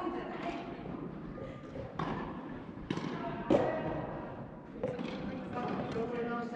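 Soft tennis balls being hit by rackets and bouncing on the court: four sharp pops spread over a few seconds, the third the loudest, ringing in a large indoor hall. Players' voices carry underneath.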